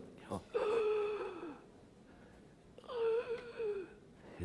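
A person's voice making two long, wavering moaning breaths, each about a second long and sliding down in pitch at the end, imitating the laboured breathing of a gravely ill man.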